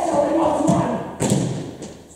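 A man's loud stage voice shouting, with thuds from his feet on the stage floor near the start and again a little past the middle.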